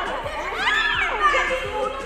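Children's voices, high-pitched and rising and falling, over background music.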